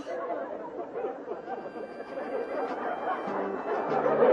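Sitcom audience laughter and murmuring, with no clear voice. About three seconds in, background music comes in.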